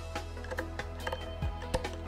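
Soft background music, with several faint, sharp snips of scissors cutting through jute burlap.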